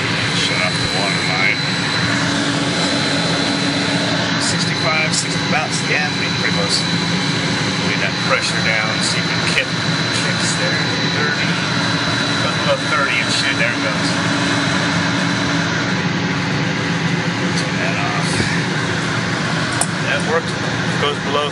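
VFD-driven water booster pump running steadily: a continuous mechanical drone with a thin, steady high whine over a low hum.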